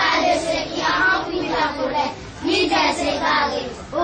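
A group of children singing together, in short phrases with brief breaks.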